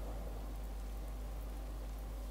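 Steady low hum with a faint even hiss; no distinct sound stands out.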